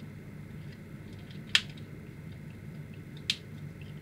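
Two sharp clicks of small hard-plastic action-figure parts, less than two seconds apart, as a tiny missile launcher is pressed onto its round peg on the figure.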